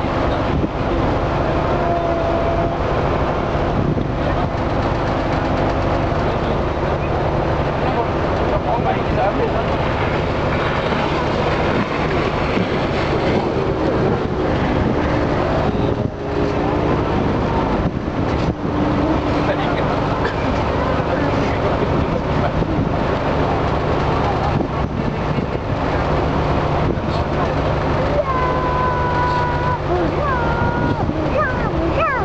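Ferry's engine running steadily, a constant low hum under the rush of wind and water along the hull.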